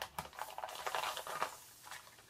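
Air hissing into a pierced vacuum-sealed plastic filament bag, with thin plastic crinkling and crackling as hands pull the cut open. The hiss fades away over the first second and a half as the bag fills.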